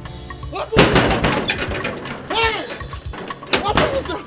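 Loud banging on a metal compound gate, a shouted call, then sharp metallic clicks as the gate's padlock and latch are worked.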